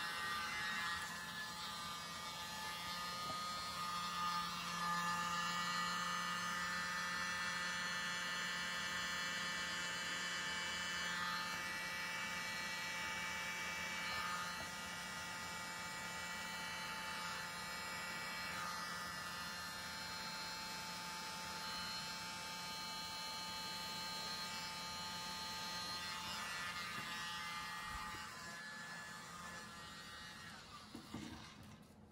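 Small electric motor of a paint-pouring spinner running at a steady speed, a constant whirring hum that winds down near the end as the canvas is spun to spread the poured acrylic blooms.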